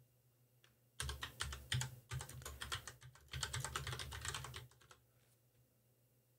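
Typing on a computer keyboard: a quick run of keystrokes starting about a second in and stopping just before five seconds, with two brief pauses.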